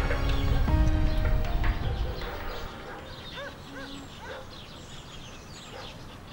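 Music with sustained notes fades out over the first two seconds or so. Birds then chirp and call, quieter, with a few repeated short arched calls and higher twitters.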